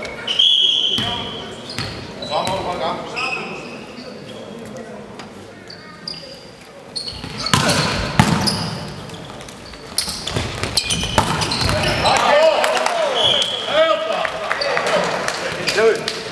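Volleyball rally in a reverberant sports hall: a short whistle blast near the start, then sharp thuds of the ball being struck mid-rally and players' shouts, with another short whistle blast near the end.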